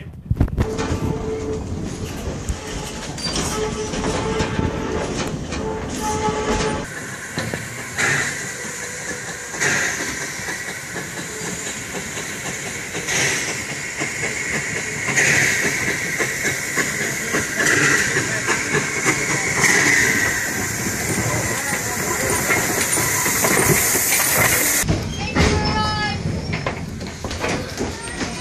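A steam train running: rattling and clatter inside a vintage carriage with a steady tone. After a sudden change, the steam locomotive's steady hiss follows, with several high wavering squeals over it.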